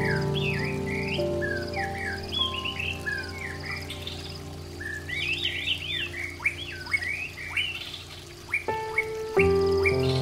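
Soft, slow music of long held chords, with many birds chirping over it in short rising and falling calls. The chords change near the end.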